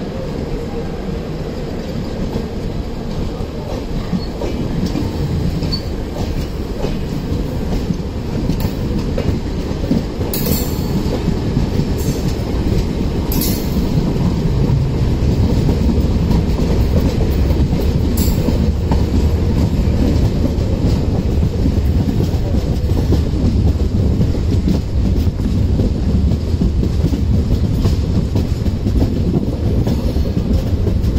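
Passenger train running, heard from an open coach door beside a second train on the next track: a steady rumble and clatter of wheels on rail that grows louder about a third of the way in, with a few brief high wheel squeals around then and again near the middle.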